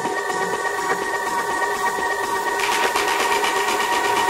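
Tech house track in a breakdown: a sustained synth chord held steady with no kick drum, and fast ticking high percussion coming in about two-thirds of the way through.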